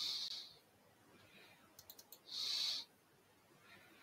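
Computer mouse clicks, a few in quick succession about two seconds in, between two short hisses about half a second long, one at the start and one about two and a half seconds in.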